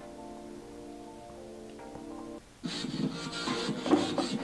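Music played through small, cheap Bass Jacks aux PC speakers: a quiet stretch of held notes, then about two and a half seconds in the music comes in louder, thin and with no bass, sounding "like a paper bag".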